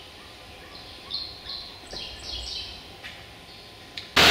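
Small bird chirping in the background: a quick run of short, high notes starting about a second in, over a faint low hum.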